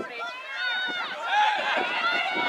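Several high-pitched voices shouting and calling over one another at once, from players and spectators around the field.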